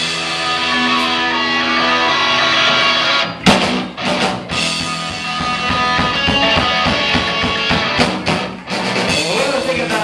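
Live punk rock band playing loud, distorted electric guitar. For the first three and a half seconds held guitar chords ring out. Then a crash brings in the drums and the full band playing fast.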